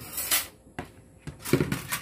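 Plates and cutlery being moved about on a table: a few light knocks and a click, with some rustling.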